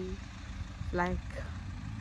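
Steady low hum of an idling vehicle engine, with one short word from a woman about a second in.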